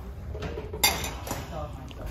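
Yellow daisy-button pressed-glass bowl set down in a wire shopping cart. It gives a sharp glassy clink against the cart about a second in, then a lighter one.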